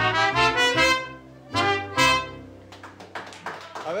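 Piano accordion playing held chords over a steady bass, ending on a final chord about two seconds in that rings away. A few scattered hand claps follow near the end.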